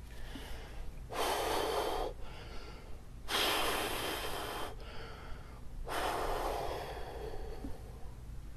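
A man's heavy breathing while taking a bong hit: three long, breathy draws and exhalations of about a second each, the last fading out.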